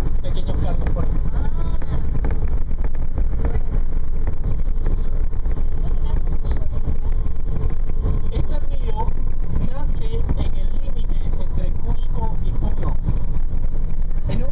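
Steady low engine and road rumble heard inside a moving vehicle, with faint voices underneath.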